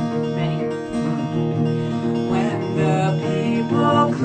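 Acoustic guitar strumming chords, with a man and a woman singing together from about two seconds in.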